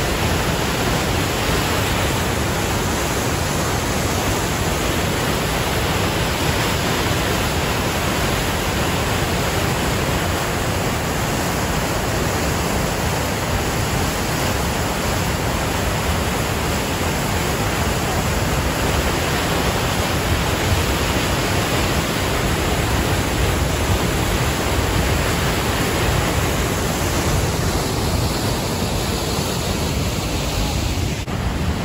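Waterfall on the Bighorn River pouring into a narrow rock canyon: a loud, steady rush of falling water that does not change.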